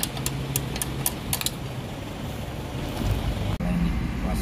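A steady low mechanical hum with a quick run of sharp clicks, about three or four a second, through the first second and a half. About three and a half seconds in, it cuts to a car's cabin with a deeper, louder engine rumble.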